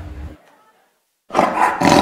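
Tiger roar sound effect, loud, starting about a second and a half in, with a brief dip before it carries on.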